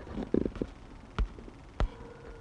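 Finger taps on an iPhone's on-screen keyboard while a password is typed: two sharp clicks, a little over a second in and near the end. A short low rumble comes shortly after the start.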